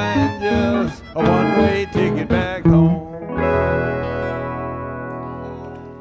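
Western swing band of guitars, steel guitar, upright bass and fiddle playing the song's ending: a few short, punched chords, then a final held chord that rings and slowly fades away.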